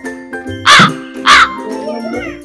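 Two loud crow caws, about half a second apart, over background music with steady sustained tones.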